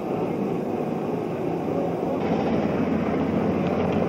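Steady outdoor background rumble and hiss with no distinct events, getting a little brighter about two seconds in.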